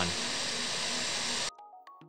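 Loud steady hiss of unfiltered room noise picked up by the microphone: a white-noise app at full volume, an overhead fan, an air conditioner and thunderstorm sound. It cuts off abruptly about one and a half seconds in as RTX Voice noise suppression is switched on, leaving only faint background music.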